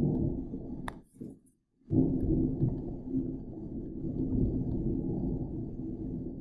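Low, steady rumbling background noise that cuts out for under a second about a second in and then returns, with a single sharp click just before the gap.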